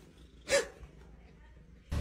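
A single short, sharp yelp-like vocal call about half a second in, over faint room tone.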